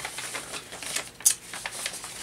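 Folded paper letter being handled and unfolded by hand, crackling in a run of irregular small clicks, with one sharper crack a little past halfway.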